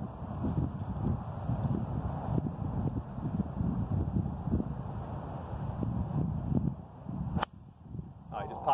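Wind buffeting the microphone, then near the end a single sharp crack of a golf club head striking the ball on a full swing; the shot pops up off line.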